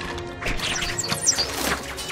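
Dramatic film score music with several sudden crashing hits, the loudest about a second and a half in.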